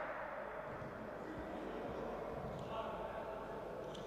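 Steady background murmur of voices in an indoor sports hall, with no distinct impacts.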